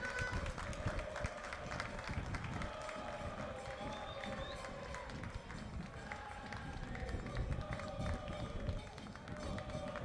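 Football stadium ambience: distant crowd voices with some held, sung-sounding lines, over a steady low rumble and scattered small knocks.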